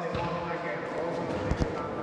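Murmur of a group of people talking, with a ball bounced twice on the sports hall floor in two quick low thuds about one and a half seconds in.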